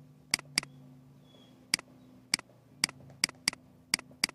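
Computer mouse button clicked eight times, short sharp single clicks at uneven spacing, over a faint steady low hum.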